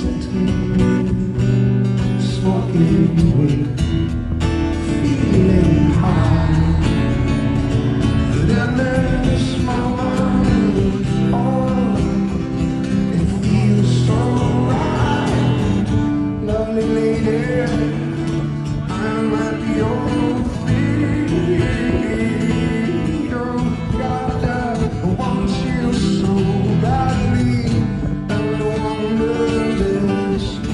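Acoustic guitar music, plucked and strummed, with a voice singing a melody through much of it.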